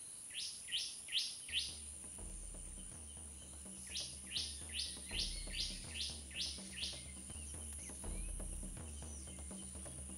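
Crickets keep up a steady high drone while a bird calls in quick series of short, downward-sliding chirps, four near the start and eight more from about four seconds in. A low bass line comes in under them about a second and a half in.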